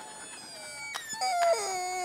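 A staged bird-like cry: a drawn-out call that steps down in pitch partway through, heard as the words 'chết oan' ('wrongly killed').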